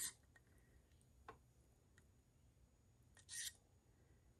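Near silence with faint handling sounds from metalwork with pliers: a light click about a second in, then a short scrape a little after three seconds.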